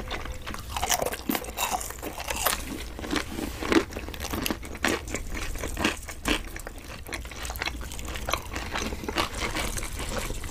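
Close-miked chewing and biting of crispy fried curly fries and breaded fried balls, with irregular sharp crunches, the loudest a little under four seconds in, over a steady low hum.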